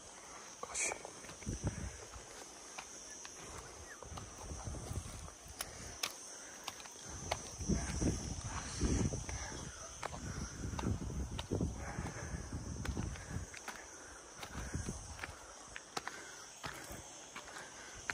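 Footsteps on a dry, stony dirt trail, uneven and irregular, with brushing against dry scrub.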